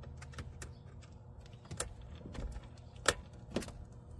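Small screwdriver driving a screw into the plastic housing of a Shurflo pump pressure switch: a few scattered sharp clicks and ticks of metal on plastic, the loudest about three seconds in, over a steady low hum.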